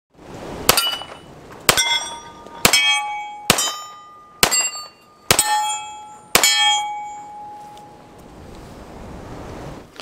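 Seven shots from a Para USA Expert 1911 .45 pistol, about one a second, each followed by the ring of a steel target being hit. The last ring fades out over about two seconds.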